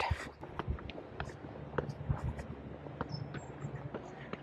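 Footsteps going down stone steps: irregular light taps and scuffs. A brief high chirp comes a little after three seconds in.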